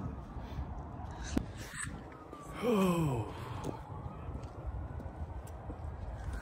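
A man's voice makes one short wordless vocal sound, about half a second long, that falls steadily in pitch about halfway through, over a steady low background rumble.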